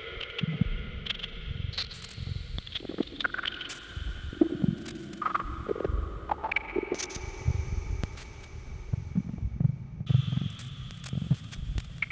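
Ambient electronic music from analog and modular synthesizers: held tones that step to a new pitch every second or two, over low, irregular rumbling thuds and scattered sharp clicks.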